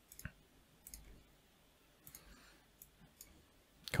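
Faint, scattered clicks from a computer mouse and keyboard, about half a dozen at irregular intervals.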